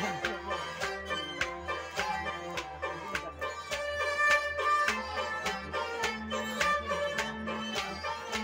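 Traditional Kashmiri folk music, an instrumental passage: a quick, steady drum beat of about four strokes a second under a sustained melody line.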